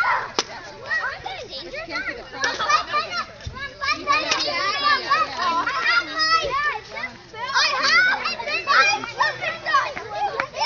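A group of children talking and calling out at once, many voices overlapping.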